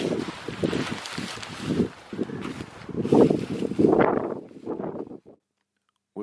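Wind buffeting the microphone in uneven gusts while a person walks through alpine grass. It cuts off suddenly near the end.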